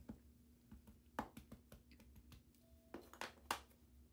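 A few faint, soft taps of a plastic ink pad being dabbed onto a rubber stamp on an acrylic block and set down on the tabletop, the clearest about a second in and a quick cluster near the end.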